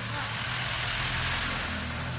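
A JMC light truck's engine running as it drives past close by, its noise swelling to a peak about a second in and then easing as it goes.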